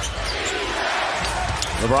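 Arena crowd noise in a basketball game, with the ball being dribbled on the hardwood court. A commentator's voice comes in right at the end.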